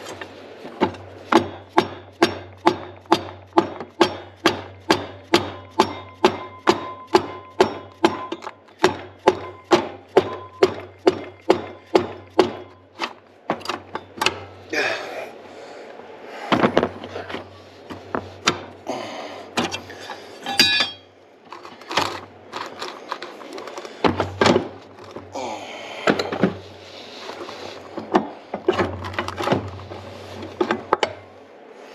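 Repeated knocks on the side case cover of a Yamaha G2 golf cart engine as it is driven loose, about two a second for the first dozen seconds, then slower and irregular. A low hum sits between the blows.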